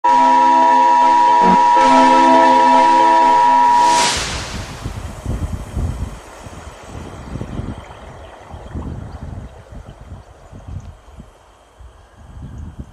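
A loud, steady electronic alert tone with many overtones, the emergency-broadcast signal over a glitching news screen. It cuts off about four seconds in with a short burst of static, and quieter, uneven low rumbling noise follows.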